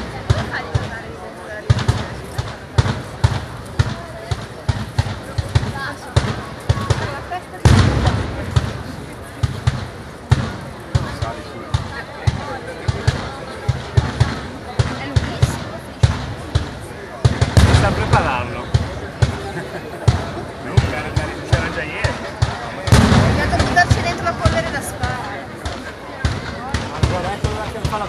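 Mascoli, small iron mortars charged with black powder, firing one after another in a fast, irregular string of bangs, roughly one to two a second. The bangs come thicker and louder in three clusters: about 8 seconds in, around 17–18 seconds, and about 23 seconds in.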